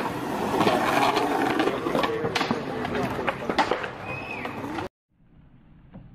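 Chatter of onlookers mixed with sharp skateboard clacks on concrete. The sound cuts out abruptly about five seconds in, and a much quieter outdoor ambience follows.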